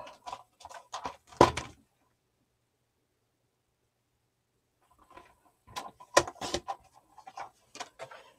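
Paper and cardstock being handled on a cutting mat: scattered light taps and rustles. They stop for a few seconds of dead silence in the middle, then start again.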